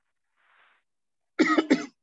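A person coughing twice in quick succession, sharp and loud.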